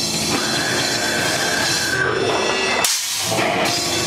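Live heavy rock band playing loud, with dense distorted guitar and a held high note through the first half. The low end drops out briefly about three quarters of the way through, then the full band comes back in.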